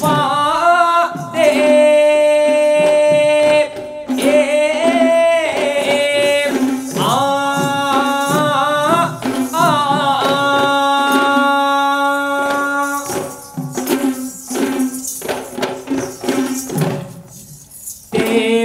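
Traditional Sri Lankan dance music: a voice sings long, ornamented held notes over the strokes of Kandyan geta bera drums. Near the end the singing thins out and the drum strokes carry on alone.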